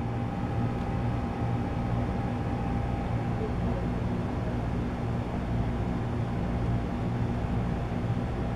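Steady low machine hum with a faint high whine running through it.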